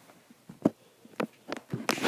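A few scattered light taps and clicks, the loudest a little over half a second in.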